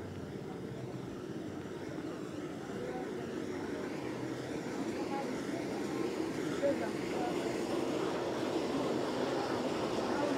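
Roadside traffic noise: a vehicle's engine drone growing steadily louder as it approaches.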